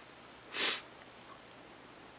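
One short sniff through the nose, about half a second in.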